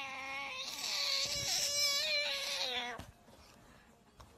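A cat yowling in a long, wavering growl-yowl with ears pinned back, a defensive warning. It swells in the middle and stops abruptly about three seconds in.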